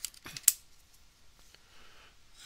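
Plastic battery cover of a handheld sound level meter being pressed shut: a small click, then one sharp snap about half a second in, followed by faint handling.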